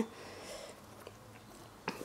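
Quiet room with faint rustling from handling a small thread-and-chain toy halter, and one short click shortly before the end.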